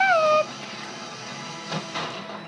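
A brief, high-pitched vocal call, falling in pitch and lasting about half a second, at the start, over faint background music.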